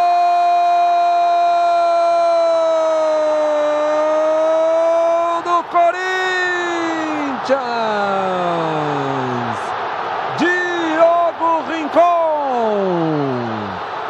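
Brazilian TV commentator's drawn-out goal shout: one long held note for about five seconds, then several shouted phrases that slide down in pitch, over stadium crowd noise.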